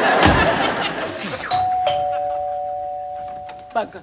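A door shuts with a thump just after the start. About a second and a half in, a two-tone doorbell chime sounds: a higher note, then a lower one, both ringing on and fading for about two seconds.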